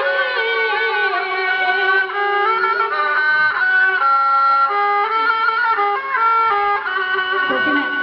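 Instrumental music with no singing: one melody line of held notes moving up and down in steps over a light backing. A voice starts talking near the end.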